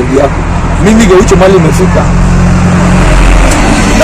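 A large road vehicle passing close by, its engine a steady low drone that grows to its loudest about three seconds in.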